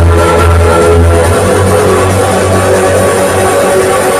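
Loud electronic dance music from a club sound system, recorded by a phone: sustained synth tones over a heavy bass that thins out about a second and a half in.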